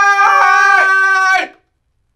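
Male voices singing one long, held high note together without accompaniment, breaking off abruptly about one and a half seconds in.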